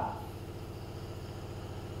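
A steady, even mechanical hum from a motor running in the room, with no change through the pause.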